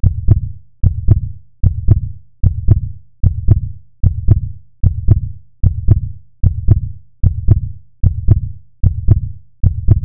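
Heartbeat sound effect: a deep double thump, lub-dub, repeating steadily about every 0.8 seconds, around 75 beats a minute.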